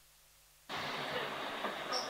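Near silence, then about 0.7 s in a steady hiss with faint voices in it starts abruptly: the soundtrack of a fluoroscopy film clip of a balloon dilatation being played over the lecture hall's sound system.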